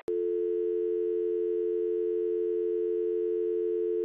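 A steady electronic tone of two low notes held together, like a telephone dial tone. It starts abruptly just after the beginning and holds unchanged.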